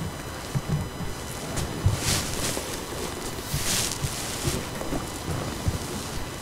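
Rustling and soft bumps of a person stirring in a padded armchair, with two louder hissing rustles about two and three and a half seconds in.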